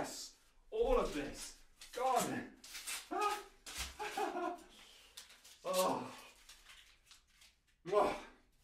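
A man's distant, indistinct voice calling out five times, short and pitched, with the papery rustle of sticky notes being ripped off a wall and dropped to the floor.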